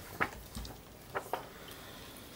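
A few brief, faint clicks or taps over quiet room tone in a small meeting room.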